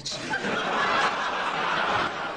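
Studio audience laughing together, a dense wave of laughter that builds over the first second and then starts to fade.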